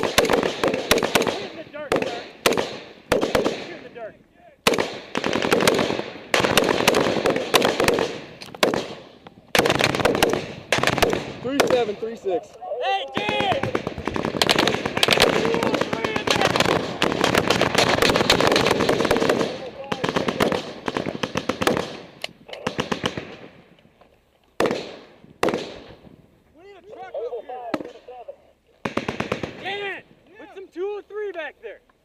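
Close-range gunfire from soldiers' rifles in a firefight: runs of rapid shots and bursts, loud at the microphone, thinning out after about twenty seconds. Men shout briefly near the middle and again near the end.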